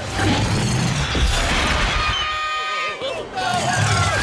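Film sound effect of the Hex's energy wall expanding: a dense rushing crackle, then about two seconds in a shimmering cluster of steady tones.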